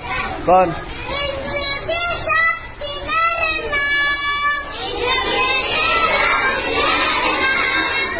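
A crowd of young boys shouting and calling out together in high voices. Separate cries stand out in the first half, then they merge into a dense babble of many children.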